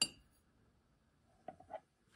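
A single sharp metallic clink with a brief high ring as the aluminium cream-dispenser bottle is handled, then a few light taps about a second and a half later.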